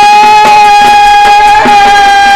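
Odia danda nacha folk music: one long held high note, sagging slightly in pitch, over steady drum strokes about twice a second.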